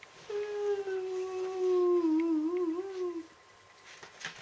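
A person humming one long note, held at a nearly steady pitch for about three seconds and wavering near the end.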